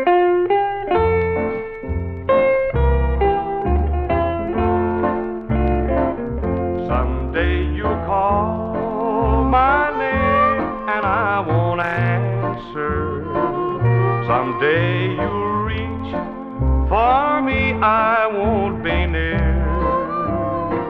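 1950s Nashville country band playing a slow country song, with guitars, piano, fiddle and a steady bass beat. The recording comes off a 1957 transcription disc.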